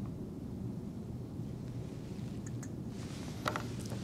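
Quiet room tone with a steady low hum, and a few light clicks about two and a half and three and a half seconds in.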